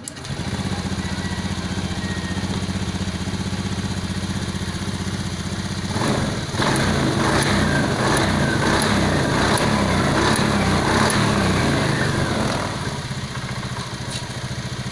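Honda Beat eSP scooter's 110 cc single-cylinder engine starting just as the clip begins and idling steadily. From about six seconds in it is held at higher revs, running louder for about six seconds, then drops back to idle near the end. It runs after a repair of the crankshaft position sensor wiring that had set fault code 52.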